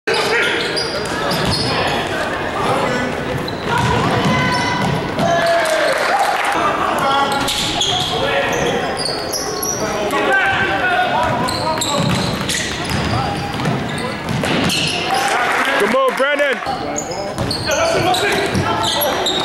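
Live basketball game in a gym: a basketball dribbled on the hardwood court, short squeaks from players' shoes and chatter and shouts from players and spectators. A pair of squeaks stands out about sixteen seconds in.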